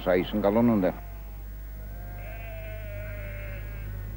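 A sheep bleating: one long call lasting almost three seconds, wavering slightly and falling a little in pitch.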